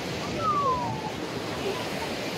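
Ocean surf washing onto a sandy beach, a steady rush, with some wind on the microphone.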